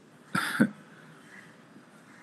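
A man coughs once, briefly, over a video-call line.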